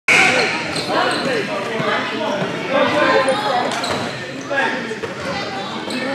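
A basketball bouncing on a gym floor, with a mix of voices from players and onlookers echoing through a large indoor gym.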